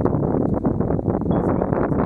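Wind buffeting the microphone: a steady, fluttering rush of noise.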